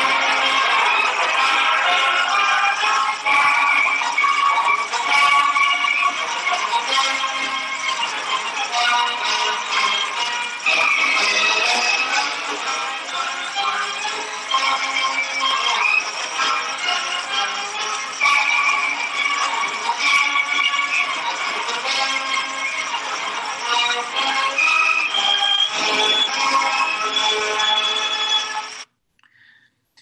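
A 1952 recording of a college band playing the school's alma mater. It has the thin sound of an old recording and cuts off abruptly about a second before the end.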